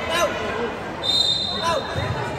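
Voices chattering in an echoing indoor sports hall, with a basketball bouncing on the court. A high steady tone starts about a second in and lasts about a second.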